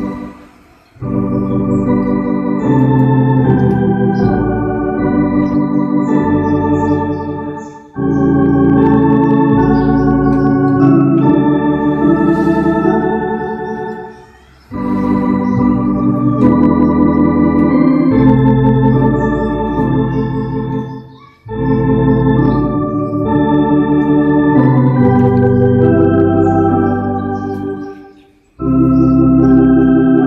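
Electronic church organ playing a slow hymn in full sustained chords with pedal bass notes and a wavering vibrato. The phrases are about seven seconds long, each followed by a brief pause.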